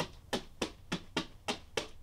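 Two leather floggers striking a mannequin in a steady, quick alternation, about seven sharp smacks in two seconds, the even rhythm of two-handed Florentine flogging.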